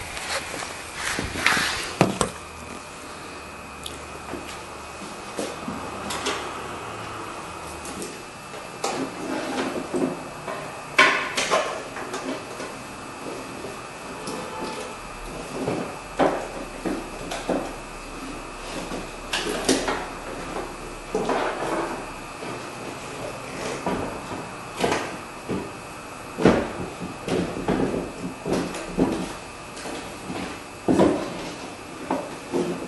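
Irregular knocks, clunks and rattles of hands and parts working inside the stripped door of a 2008 Ford F250 while its window channel is refitted. A faint steady high tone runs underneath.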